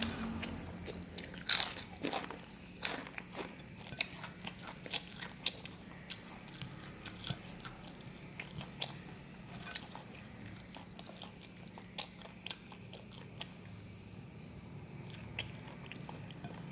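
Close-up mouth sounds of a person eating by hand: crunchy kerupuk crackers bitten and chewed with rice and kangkung. Irregular crisp crunches, the loudest about one and a half seconds in, then lighter, sparser chewing clicks.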